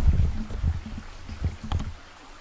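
Low, uneven rumbling and bumps of wind and handling noise on a handheld camera's microphone as the camera is swung round, with a sharp click near the end.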